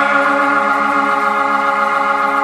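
An organ holding one steady chord, with no drums or bass under it.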